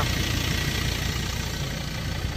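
A Ford Ranger Wildtrak's 3.2-litre diesel engine idling with a steady low rumble.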